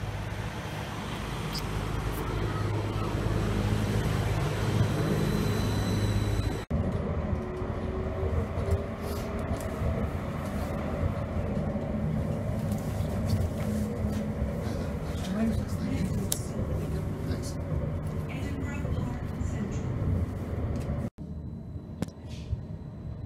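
Edinburgh tram (CAF Urbos 3) pulling into a stop, its steady low hum and wheel noise growing louder over the first six seconds. After a sudden cut comes the running noise inside the moving tram: a rumble with frequent clicks and rattles. Just before the end it cuts to a quieter stretch.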